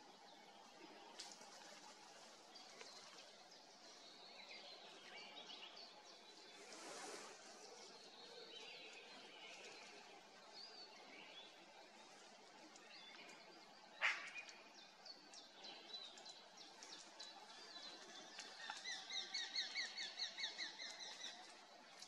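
Faint wild birdsong in a forest, with one sharp click about fourteen seconds in. Near the end comes a louder run of rapid, harsh chattering notes from a bird, lasting about three seconds.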